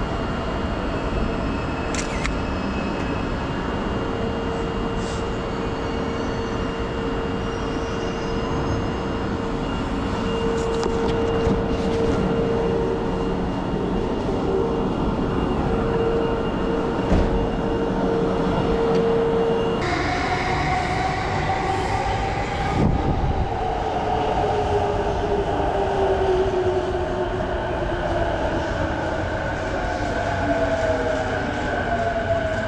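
Station platform ambience with a steady hum beside a standing 651 series express train. Then, about two-thirds of the way through, an electric commuter train's motors whine in several tones that slowly fall in pitch as the train slows into the platform.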